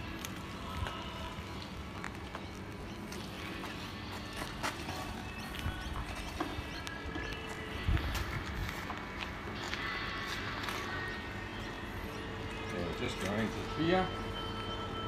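Scattered knocks and clicks of a metal diffuser rod and its hoses being handled and set into the bung hole of an oak wine barrel, with a louder knock about eight seconds in, over a steady low hum.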